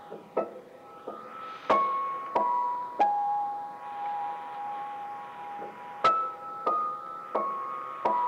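A recording of slow upright piano played back at normal speed from a Sanyo Talkbook microcassette dictaphone. Single notes are struck one after another, roughly every half second to second, with one note left to ring for about three seconds in the middle.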